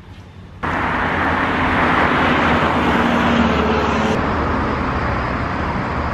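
Loud road-vehicle noise: a steady rush with a low hum underneath, cutting in abruptly about half a second in after a quieter stretch.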